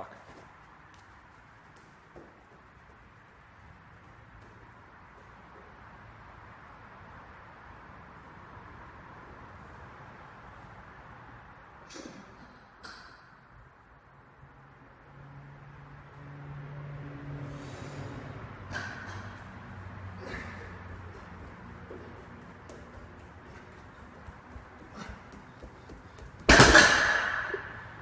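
Loaded farmers walk handles, about 164 lb each, carried across a rubber-floored gym and set down near the end with one loud metallic clank and thud of the plates. Before that, faint clinks as the handles are picked up and a rising rattle of the carry.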